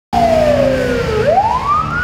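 Ambulance siren wailing: its pitch slides down for about a second, then climbs steeply.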